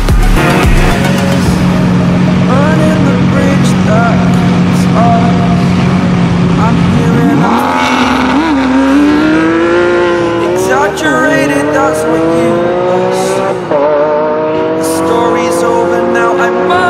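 Lamborghini Aventador SVJ's naturally aspirated V12 held at steady revs for several seconds. Then, about seven seconds in, it launches and accelerates hard, its pitch climbing with a drop at each of two upshifts.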